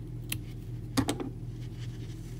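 Small craft scissors snipping a yarn tail: a faint click about a third of a second in, then a sharper snip about a second in.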